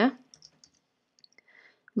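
A few faint, scattered clicks of computer keys and a pointer as a short word is typed.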